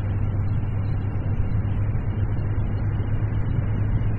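Yamaha XJ1100 Maxim's air-cooled inline-four engine running at a steady cruising speed, a constant low drone under the rush of wind and road noise.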